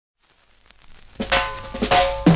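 Drum intro to a reggae single played from a vinyl 45. Faint hiss comes first, then a snare and cymbal hit about a second in that rings away, and a second hit just before the band comes in.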